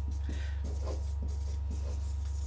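Marker pen scratching on a whiteboard in a series of short strokes as words are written, over a steady low hum.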